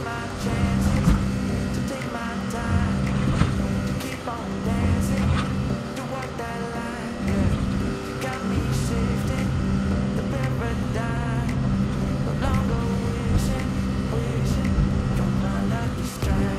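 DEVELON excavator's engine and hydraulics running under load as the bucket knocks down a concrete-block retaining wall, with scattered knocks and clatter of blocks falling onto the rubble. Background music plays over it.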